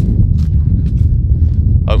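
Loud, uneven low rumble of wind buffeting the microphone, with a few faint clicks.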